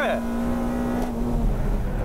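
Honda Civic Sports Modulo Type R's K20A four-cylinder engine heard from inside the cabin, held at high revs at a steady pitch over a heavy low rumble.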